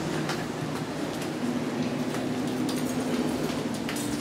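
Steady machine-like running noise with a low hum, and a few faint clinks and knocks over it.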